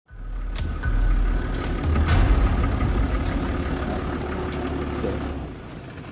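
Game-drive vehicle's engine running with a steady low rumble that eases off about five and a half seconds in.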